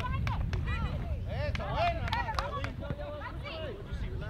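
Shouts and calls from players and spectators across an open soccer field, overlapping and unintelligible, with a few sharp knocks in the first half. A steady low rumble of wind on the microphone runs underneath.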